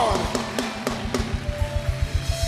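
A live church worship band playing with a steady drum beat, with sharp strikes about four a second and a few held notes, while the congregation claps along.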